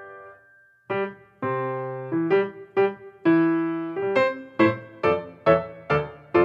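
Piano music: a held chord dies away into a brief pause, and about a second in the piano comes back in with a string of struck chords and notes, each ringing and fading.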